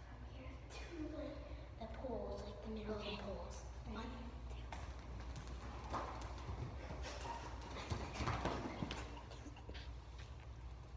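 Children's voices in the first few seconds, then bare feet slapping quickly on a hard polished floor as two children run a race. The footfalls are loudest a little before the end.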